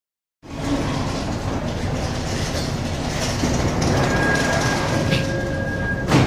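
Steady carriage noise heard from inside a Seoul Metropolitan Subway Line 1 electric commuter train, starting abruptly half a second in. A steady high whine joins about four seconds in.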